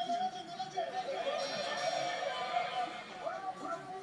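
Japanese TV variety-show audio playing quietly in the background: studio music with faint voices.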